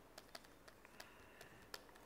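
Faint, irregular clicks and taps of a stylus on a pen tablet during handwriting, about six in two seconds, over quiet room tone.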